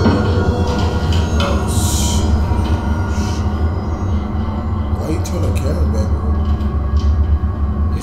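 Low, steady rumbling drone from a horror film's soundtrack, with scattered hissing noises over it.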